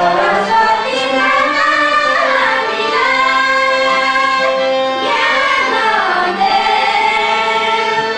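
A group of women singing a song together, with long held notes that slide between pitches.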